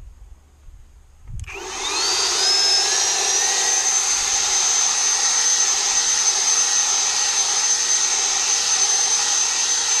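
Cordless leaf blower switched on about a second and a half in: its motor spins up with a rising whine for about two seconds, then runs steadily at full speed, a high whine over the rush of air, blowing gravel and debris off a driveway.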